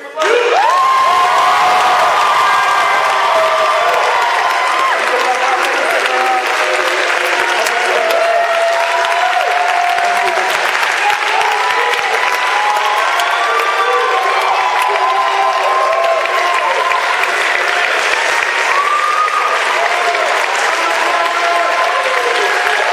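Concert audience applauding and cheering, breaking out suddenly and staying loud, with shouts and whoops from the crowd mixed into the clapping.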